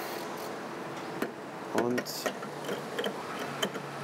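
A few short, sharp clicks and knocks of a metal fuel-pump nozzle being handled and pushed into a car's filler neck, over a steady low hum.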